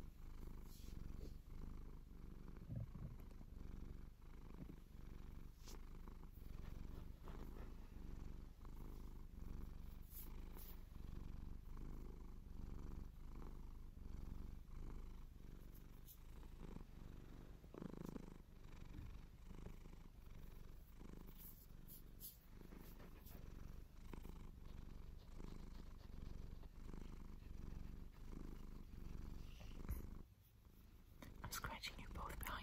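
A domestic cat purring close to the microphone as it is scratched: a steady low purr that swells and dips with each breath, about once a second. Now and then there is a faint scratch of fingers in its fur.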